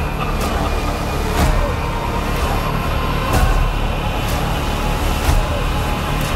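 Dense trailer soundtrack: a loud low rumble under a few steady tones, with a sharp whoosh-like hit about once a second.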